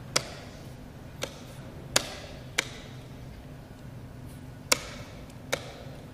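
Chess pieces knocking onto a chessboard: six short, sharp wooden knocks at uneven intervals, over a steady low room hum.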